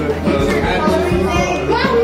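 Children's voices chattering over background music with a steady bass beat.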